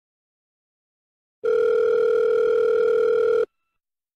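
Telephone ringback tone, as a caller hears it while the line rings: one steady electronic tone starting about a second and a half in, lasting about two seconds and cutting off suddenly.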